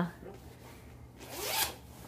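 A jacket zipper pulled up once, a short rasp rising in pitch over about half a second, past the middle.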